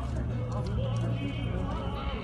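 People's voices talking over a low steady hum, with light scattered clicks.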